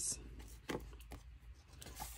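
Faint handling of paper planner sticker sheets: a few soft rustles and taps as the sheets are shuffled in the hands.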